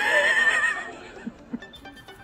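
A woman's high-pitched, wavering laugh, lasting just under a second, then dying away.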